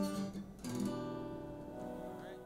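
Acoustic guitar played softly: a chord strummed at the start and another about two-thirds of a second in, left ringing.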